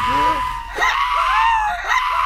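An animated chicken seal screaming: one long, steady, high-pitched scream, with shorter wavering cries overlapping it.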